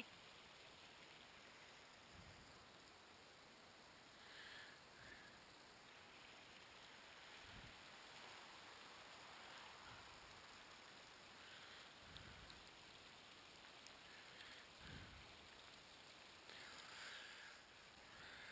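Near silence: faint steady outdoor hiss, with a few soft low thumps.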